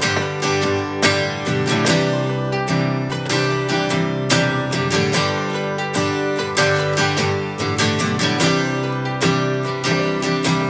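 Instrumental intro of a country song on two strummed acoustic guitars and an acoustic bass guitar, with steady rhythmic chord strumming before the vocal comes in.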